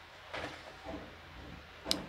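Paper handling as a softcover journal's pages are turned by hand: soft rustles, then a sharp click near the end.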